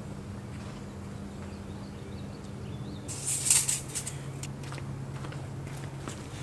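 Outdoor ambience: a steady low hum with faint bird chirps, broken about halfway through by a short, loud rustling scrape.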